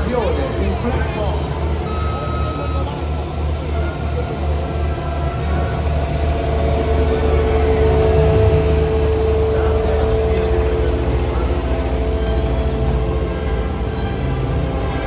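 Diesel engines of Cat 259D3 compact track loaders running, a steady low rumble. Partway through, the engine tone rises and grows louder for a few seconds, then eases back.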